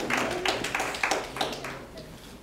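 A few people clapping hands, scattered claps that die away within about two seconds.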